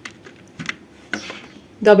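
A few separate computer keyboard keystrokes, single clicks spaced irregularly over about a second and a half, as a short word is typed.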